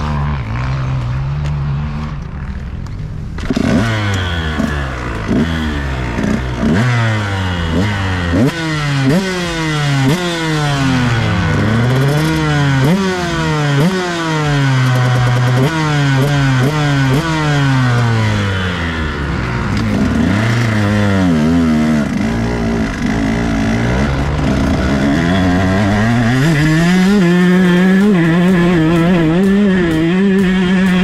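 KTM SX 125 two-stroke single-cylinder engine idling, then revved up and down over and over from a few seconds in, each rise and fall lasting a second or two. Near the end it holds a steady higher pitch with the bike under way.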